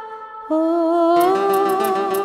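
A woman singing held notes over harmonium in a Bengali song; about a second in, the accompaniment fills out with low notes, guitar and a light, regular percussion tick.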